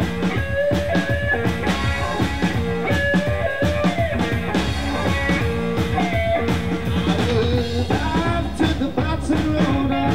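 Live Mississippi Hill Country blues: an amplified semi-hollow electric guitar plays held and bending notes over a drum kit's steady, hypnotic beat.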